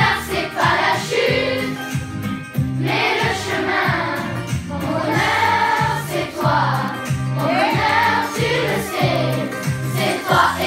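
A children's school choir singing together, young voices over a steady instrumental accompaniment.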